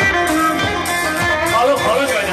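Live folk music for dancing, with an amplified plucked-string instrument carrying a wavering melody over a steady beat.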